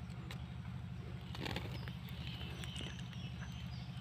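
Faint outdoor background: a steady low hum with a few faint clicks.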